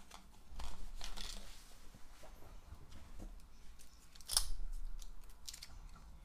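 Plastic sink-trap parts and drain strainer being handled and fitted together: rubbing, rustling and small plastic clicks, with one sharper click about four and a half seconds in.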